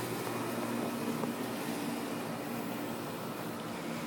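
Steady outdoor background hum with a hiss of noise and no distinct events, like a distant machine or air-conditioning unit running.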